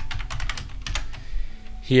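Computer keyboard being typed: a quick run of about ten keystrokes over the first second and a half, then a word of speech near the end.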